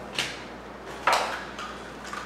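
A packaged fishing bait being taken out of a cardboard box: two short rustling scrapes of cardboard and packaging, about a second apart.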